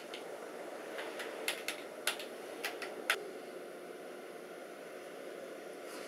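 Buttons on a handheld video game controller clicking: about ten quick, irregular presses in the first half, then only a steady low room hiss.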